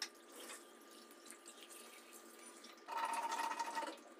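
Close-miked eating sounds: a fork clicking on the plate at the start, then wet chewing and mouth sounds of fried aloo chop and noodles, with a louder noisy stretch of about a second near the end.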